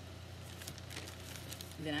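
Faint rustling and crinkling of a plastic shopping bag as items are handled, over a low steady hum; a woman starts speaking near the end.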